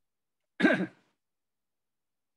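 A person clearing their throat once, briefly, just over half a second in, with dead silence around it.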